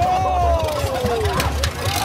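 Off-road buggy engine running low under a long, falling shout as the buggy rolls over, with a few sharp knocks.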